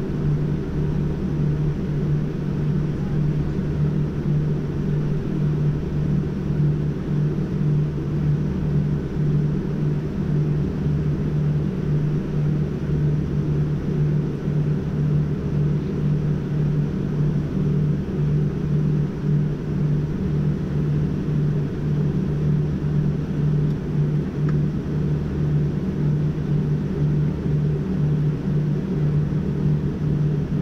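Steady cabin drone inside a Boeing 787 taxiing with its engines at idle: a constant low hum with a rumble under it.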